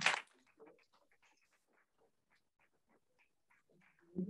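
The end of a man's spoken phrase, then a pause of near silence: room tone with a few faint ticks.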